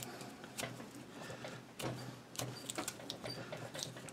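Paracord being threaded through a woven wrap on a rifle stock and pulled snug by hand: a faint, irregular rustling and rubbing of nylon cord with small scattered ticks.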